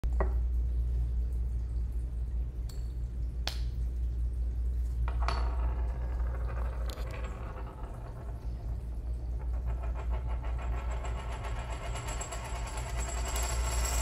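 Steady low electrical hum with a few sharp clicks in the first five seconds and a faint buzz building toward the end.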